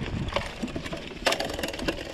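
Mountain bike rolling over a rough dirt trail: a low tyre rumble with a run of sharp rattles and knocks from the bike, the loudest a little past halfway.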